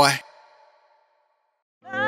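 A man's spoken words end just after the start and trail off, followed by about a second of silence. Music with sustained tones starts near the end.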